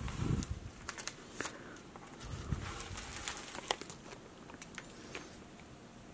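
Plastic comic-book bags crinkling and clicking as bagged comics are handled and pulled from a box, with a soft thud right at the start and another about two and a half seconds in.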